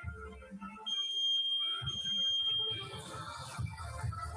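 Electronic interval timer giving one long, high, steady beep of about two seconds over background music, sounding as the exercise changes.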